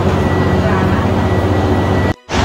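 Steady low mechanical hum of the Central–Mid-Levels outdoor escalator being ridden, with a faint steady high whine over it.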